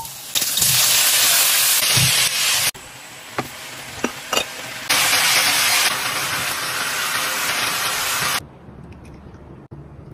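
Food sizzling in hot oil in a wok: scallions hitting the oil, then cucumber and tomato being stir-fried. Loud sizzling breaks off near three seconds, a few sharp knocks follow, then the sizzling returns from about five seconds and stops near eight and a half seconds.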